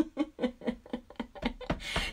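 A woman laughing softly in a quick run of short, breathy pulses.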